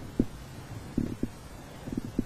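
Stomach gurgling: a few short, irregular low pops spaced through the two seconds.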